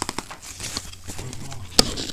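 Sharp clicks and knocks of something being handled close to the microphone, the loudest near the end.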